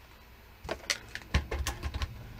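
A quick run of about six light clicks and knocks as craft supplies are handled on the table, starting well into the first second, with a low bump under the later ones.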